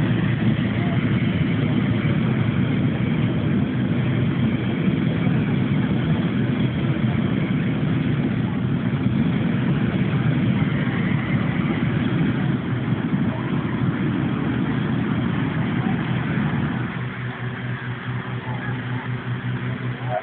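Hot-air balloon inflator fan running steadily, its petrol engine loud and close, blowing air into the envelope; the noise eases off a little about seventeen seconds in.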